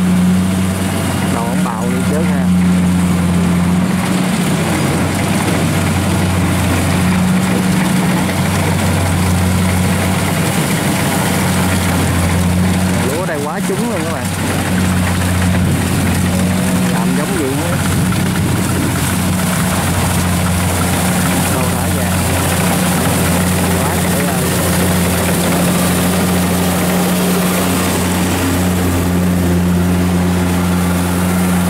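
Kubota DC-70 Plus combine harvester's diesel engine running steadily under load as the machine cuts and threshes rice, a loud, even drone with a deep hum and the clatter of the cutting and threshing gear.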